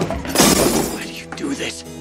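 Film soundtrack: a loud crash of something breaking about half a second in, over background music, with a man's voice briefly after it.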